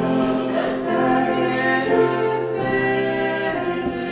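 Small church choir singing in harmony with piano accompaniment, holding long notes that change every second or so.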